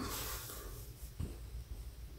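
Faint rustling and scratching of yarn being drawn through plush crochet stitches with a needle, with a slightly louder scrape about a second in.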